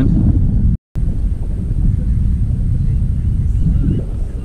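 Wind buffeting the microphone: a steady low rumble, broken by a split-second dropout about a second in.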